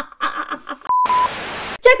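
Soft laughter, then a short electronic beep at one steady pitch followed by about half a second of even hiss that cuts off abruptly.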